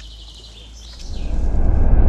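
Birds chirping briefly, then a low rumbling whoosh that swells loud from about a second in.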